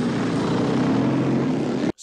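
Motorcycle engines running steadily, cutting off abruptly just before the end.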